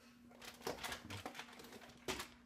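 Faint handling noises: a few light knocks and rustles as a refrigerator is opened to take something out, over a low steady hum.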